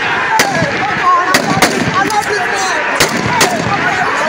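Five sharp rifle shots at uneven intervals, two of them close together, over a crowd shouting and yelling.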